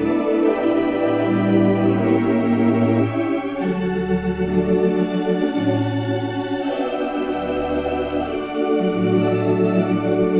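Organ playing a slow gospel hymn in sustained, full chords with a wavering vibrato, the low bass notes moving every second or two.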